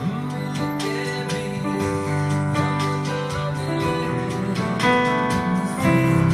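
Yamaha digital piano played with both hands: held bass notes and arpeggiated chords under a right-hand melody, in a steady flowing run of notes.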